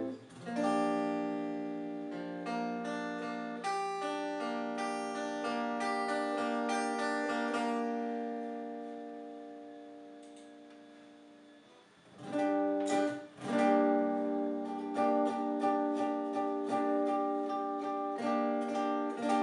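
Electric guitar playing chords: several chords struck early on, then one left to ring and slowly die away, and about twelve seconds in the strumming starts again and keeps a steady rhythm.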